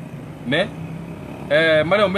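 A man speaking in two short phrases, the second louder, over a steady low hum.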